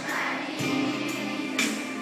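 A group of children singing together as a choir, with held notes and a sharp percussive hit near the end.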